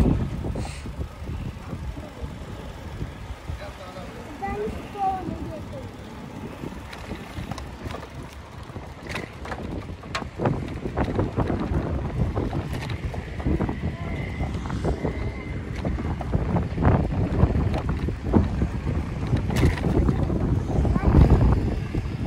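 Wind buffeting the microphone of a camera carried on a moving bicycle, a steady low rumble that grows louder toward the end.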